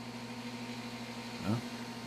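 A steady low hum in the room, even and unchanging.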